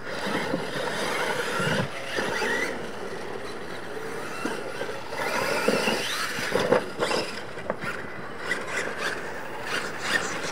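Losi LMT radio-controlled monster trucks racing off the start on dirt: electric motor and drivetrain whine with tyres churning dirt, climbing in pitch as they accelerate. Sharp knocks from landings off the jumps follow in the second half.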